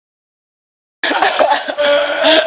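Dead silence for about a second, then coughing starts suddenly, in loud, irregular hacking bursts with voices and laughter mixed in.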